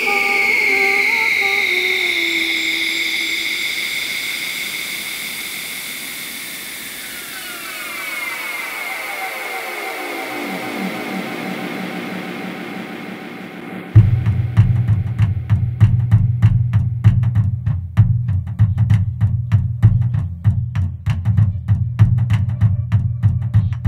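Electronic music: a high synthesizer tone slides down and fades, then a cluster of falling tones sweeps downward. About 14 s in, a heavy sampled bass-and-drum beat starts suddenly and keeps a steady, dense rhythm.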